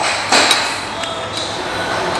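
A man huffing out a sharp breath through pursed lips, once, about a third of a second in, to cool a mouthful of scalding-hot xiaolongbao soup dumpling.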